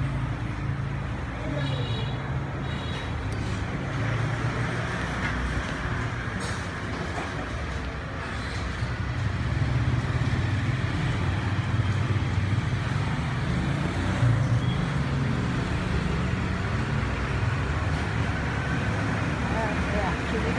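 Steady background noise of road traffic with a low engine hum, and a brief high-pitched double tone about two seconds in.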